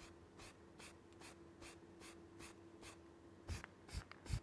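Short bursts of aerosol spray paint hissing onto a masked diecast model car body, about two or three puffs a second, faint; a couple of louder low thuds come near the end.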